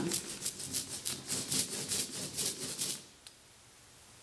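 Rubber brayer rolled quickly back and forth over black printing ink on an inking plate: a fast series of sticky swishes, about five strokes a second, that stops about three seconds in. One light click follows.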